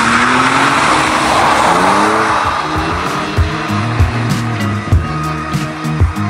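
A BMW E46 coupe with a welded differential being drifted: the engine revs rise and fall in pitch and the tyres squeal, the squeal loudest in the first second or two. From about halfway through, background music with a regular beat sits under the car.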